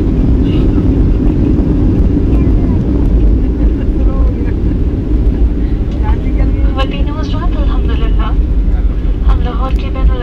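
Steady low rumble of an airliner heard from inside the passenger cabin after landing. Voices join in from about six seconds in.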